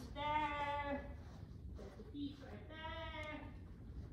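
A woman's voice calling two long drawn-out cues to a dog, each held at a steady pitch: the first lasts about a second at the start, the second is shorter, about three seconds in.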